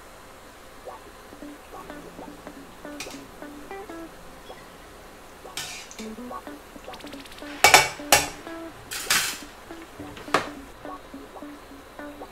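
Metal tongs clinking against a stainless steel pot as churros are turned in hot frying oil: about six sharp clinks, the loudest a cluster around eight seconds in. Light plucked background music runs underneath.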